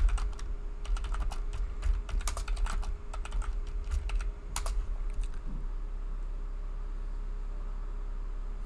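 Computer keyboard typing: quick runs of keystrokes that stop about five seconds in.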